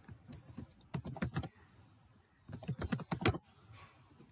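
Typing on a computer keyboard: short runs of keystrokes, the longest and loudest run coming in the last second and a half.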